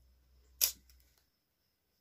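A short, sharp scrape of stiff plastic craft wire being pulled tight through a knot, once, about half a second in. A faint low hum cuts off about a second in.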